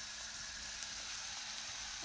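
A steady hiss from a gas stove where food is cooking, with no distinct knocks or stirs.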